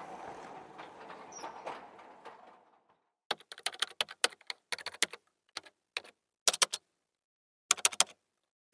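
A rushing noise fades away over the first three seconds, then keyboard typing clicks come in quick clusters separated by short pauses, a sound effect for text being typed out on screen.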